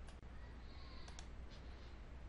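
Quiet room tone with a steady low hum, and two quick faint clicks about a second in.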